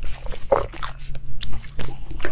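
Close-miked mouth sounds of eating: wet smacking and chewing as a bitten piece of green zucchini-shaped food is worked in the mouth, in quick irregular clicks.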